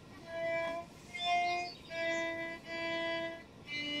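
Playback of a beginner's own violin recording by a violin practice app: about four separate slow bowed notes, each held for well under a second with short gaps between them.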